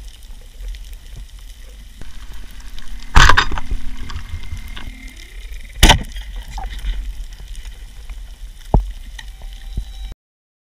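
Humpback whale song heard underwater: a held low moan from about two to five seconds in that bends upward at its end, with a fainter high tone above it and another short call near the end, over a steady crackling background. Two sharp knocks, about three seconds in and just before six seconds, are the loudest sounds.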